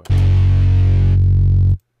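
A stock electric-guitar sound doubling a distorted bass on the same notes, played back from a beat in Reason. One low, distorted note is held for about a second and a half, then cuts off abruptly.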